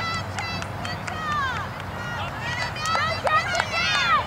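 Overlapping high-pitched shouts and calls from young players and sideline spectators during play, thickening in the second half, over a steady low hum.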